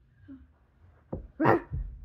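A child imitating a dog or wolf, one short loud bark about a second and a half in, with soft thumps on the carpeted floor around it.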